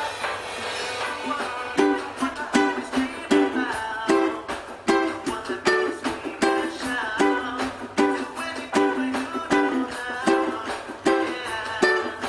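Ukulele strummed in a steady rhythm, running through the G, C, D, C chord progression, with strong strokes about every three-quarters of a second after a softer first couple of seconds.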